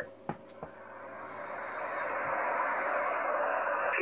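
Hiss of HF band noise from a Codan transceiver's speaker on the 20-metre band, between transmissions, after two short clicks. The hiss swells steadily over the seconds, as the receiver's gain recovers once the other station has stopped talking.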